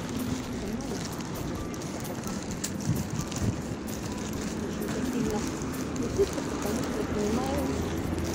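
Steady outdoor street noise picked up while walking: wind on the microphone and the hum of traffic, with faint, indistinct voices.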